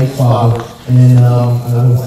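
A man's voice speaking slowly into a handheld microphone, amplified over a PA, with drawn-out words and a short pause a little over half a second in.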